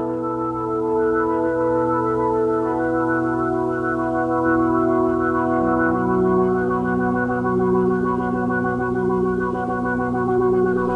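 Organ-style keyboard chords, held and sustained, with the held notes shifting to a new chord about five and a half seconds in.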